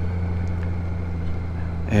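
Touring motorcycle's engine running at low, steady speed, a deep even hum.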